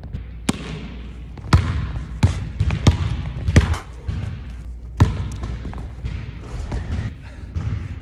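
Basketball bouncing on a hardwood gym floor: about half a dozen sharp, irregularly spaced bounces that echo in the hall.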